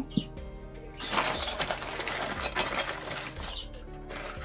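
Brown paper bag rustling and crinkling for a couple of seconds as a hand rummages inside it. A brief knock comes near the start as a small brass item is set down on the table.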